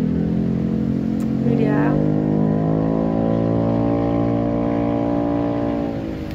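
Car engine droning steadily, heard from inside the car's cabin: a low hum that rises slightly in pitch and then holds level.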